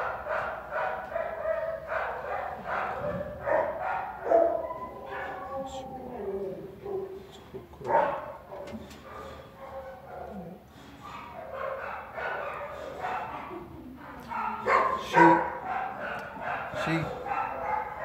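A dog vocalizing in repeated short calls while its back is being stroked, a dog that is sensitive to being touched on the back.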